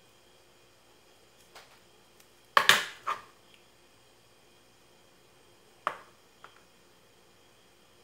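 Craft tools handled on a wooden work board: a loud metallic clatter about two and a half seconds in as the scissors are set down, and a single sharp knock near six seconds.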